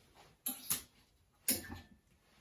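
Clothes hangers clicking against the metal rail of a garment rack as a dress is hung up and the hangers are moved along: three short sharp clicks, a pair about half a second in and one more about a second and a half in.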